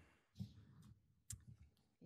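Near silence: room tone with two faint short clicks, one about a third of a second in and a sharper one past the middle.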